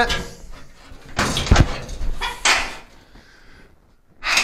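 Steel door of a 1971 Plymouth Barracuda being unlatched and swung open, with a clunk about a second and a half in and a shorter rustling noise about a second later.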